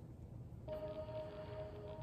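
Film trailer soundtrack opening: after faint room tone, a sustained ringing musical drone of several steady pitches begins about two-thirds of a second in and holds.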